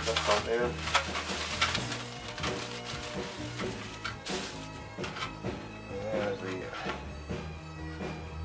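Plastic bag crinkling and rustling in irregular bursts as the parts of a plastic model kit are pulled out, over background music with a low, steady bass line.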